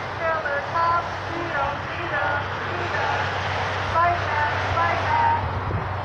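A voice speaking through a small portable loudspeaker, distant and indistinct, over a steady low rumble of traffic.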